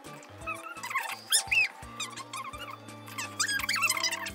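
Background music: a stepping bass line under high, squeaky, whistle-like glides that come and go.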